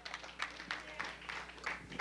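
Light, scattered clapping from a small congregation: a few sharp, uneven claps a second rather than full applause.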